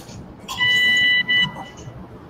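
Electrosurgical generator's activation tone: a steady high electronic beep starting about half a second in and lasting under a second, then a second short beep. It is the sign that the energy instrument is firing to coagulate tissue.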